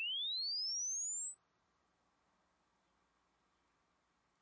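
SpectraFoo software signal generator playing a five-second linear sine sweep from 20 Hz to 20 kHz. A single pure tone at a steady level climbs from the upper midrange into the highest treble, its rise slowing as it goes. It cuts off sharply a little after three seconds in.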